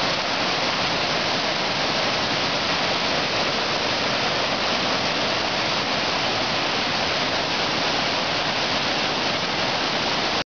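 Rapids of the Kettle River in flood after heavy rain: a steady rushing of whitewater over rock ledges, unchanging throughout.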